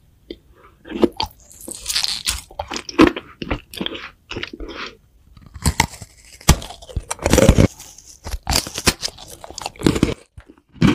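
Close-miked biting and chewing of a crunchy iced cookie: clusters of sharp cracks and crackles that start about a second in, pause briefly around the middle, then come back loud.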